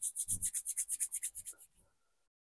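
Palms rubbed briskly together, a quick even series of dry hissing strokes at about eight a second that stops near the end.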